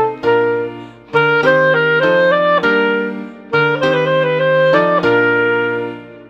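B-flat clarinet playing a simple Grade 1 melody at 100 beats per minute over piano accompaniment, in short phrases. It ends on a long held final note from about five seconds in.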